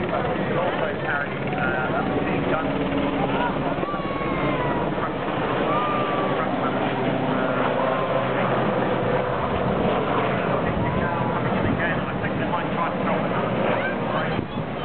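Westland Sea King helicopter flying past low, a steady rotor and turbine drone that is strongest in the middle as it comes closest, with people's voices close by.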